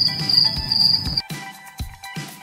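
Cricket-chirping sound effect, a high, finely pulsing trill that cuts off abruptly about a second in, laid over background music with a steady low beat. The crickets are the usual gag for an awkward silence.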